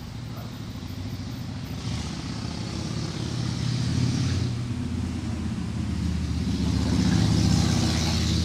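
Motor vehicle traffic: a low engine rumble that grows steadily louder, with a brief hiss higher up from about two to four and a half seconds in.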